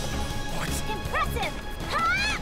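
Animated fight soundtrack: dramatic music with crash and impact sound effects, and short high vocal cries in the second half.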